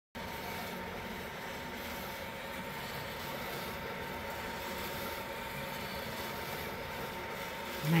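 Behmor 2000AB drum coffee roaster running mid-roast, a steady whir with a faint steady hum from its drum motor and fan as the drum turns the beans.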